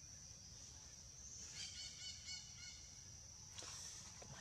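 Faint, steady high insect drone, with a quick run of about five short, high chirping animal calls about one and a half seconds in.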